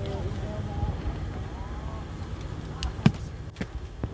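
A sharp hollow knock about three seconds in, with a couple of lighter clicks around it, as bamboo sap tubes are handled on the vendor's motorbike rack. Faint voices and a low rumble sit underneath.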